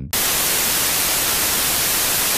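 Television static sound effect: a loud, steady hiss of white noise that cuts in suddenly and holds at an even level.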